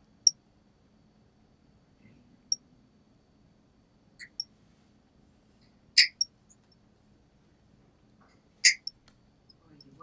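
Toenail nippers snipping through a toenail thickened by psoriasis and fungus. About six sharp cracks come at uneven intervals, the loudest two about six and nine seconds in, over a faint steady low hum.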